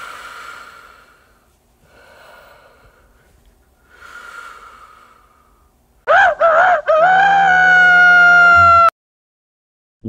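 Snoring: three slow, noisy breaths about two seconds apart. About six seconds in, a loud shouting voice breaks in, wavering at first and then held on one slightly falling note, and cuts off abruptly after about three seconds.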